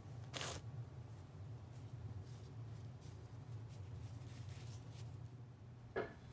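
A chert piece picked up from among other chert spalls on a plastic tarp: one short rustle and scrape about half a second in, then faint handling noises over a steady low hum.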